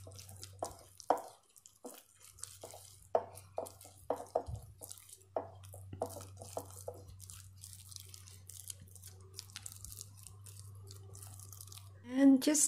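Wooden spatula stirring deviled-egg filling of mashed yolks and mayonnaise in a ceramic bowl: faint wet squishes, scrapes and small irregular taps against the bowl, thinning out after about seven seconds. A steady low hum runs underneath.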